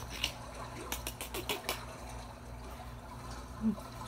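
Trickling, bubbly water sound from an aquarium fish video playing on the television, over a low steady hum, with a cluster of sharp clicks in the first two seconds.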